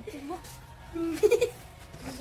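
A child's voice making short wordless sounds. The loudest is a brief wavering one about a second in.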